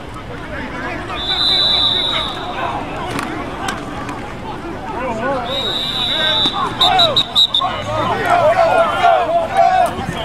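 A coach's whistle blown in a long high blast about a second in, then another long blast that ends in a few short toots, over voices shouting on a football practice field.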